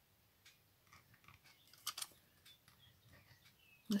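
Faint, scattered small clicks and scrapes of an applicator stick being worked in a shallow dish of silicone glue, with a slightly louder pair of clicks about two seconds in.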